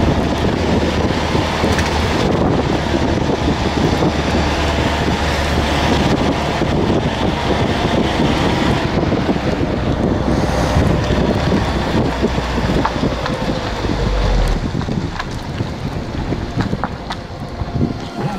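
A car driving slowly up a narrow asphalt lane, with wind buffeting the microphone over a steady low engine and tyre rumble. The low rumble ends about fourteen seconds in, after a short low thump, as the car slows.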